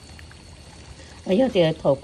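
Crushed dried chili frying in a pan of oil, a faint steady sizzle as it is stirred with a wooden spoon; a voice starts speaking a little past halfway.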